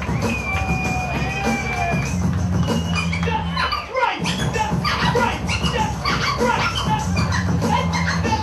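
Turntablist scratching a vinyl record over a beat with a heavy bass line: the first half holds long pitch-bent sliding tones, and from about halfway the sound breaks into fast, choppy cuts.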